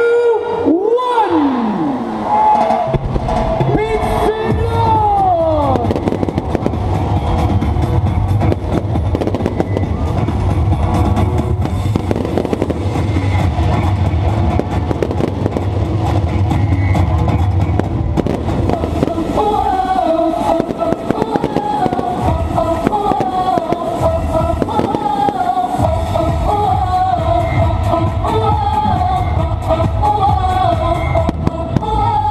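Fireworks crackling and banging over loud festival music with a heavy bass beat. A wavering melody line comes in about twenty seconds in.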